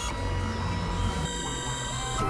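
Dense experimental electronic music: several sustained tones layered over a heavy bass, with an abrupt shift in the texture a little over a second in, when a bright high layer cuts in.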